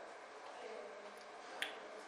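A single short, sharp click about one and a half seconds in, over faint room tone.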